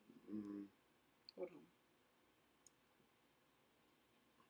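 Near silence with a few faint, sharp clicks, the clearest one about two-thirds of the way through.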